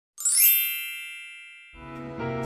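A bright, shimmering chime rings out once and fades away over about a second and a half, a sparkle sound effect for an animated title. Intro music starts just before the end.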